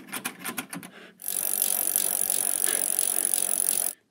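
Rapid rattling clicks, about eight a second, for the first second, then a loud, steady static hiss that starts suddenly and cuts off abruptly just before the end.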